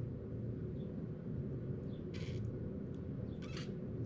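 A person blowing hard through a pierced raw egg, forcing the white and yolk out of the hole into a glass bowl: a steady muffled blowing with two short sputtering spurts, one about halfway through and one near the end.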